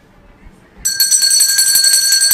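A quiet pause, then about a second in a loud electronic ringing alert tone like an alarm bell sets in: several high pitches held steady with a fast trill.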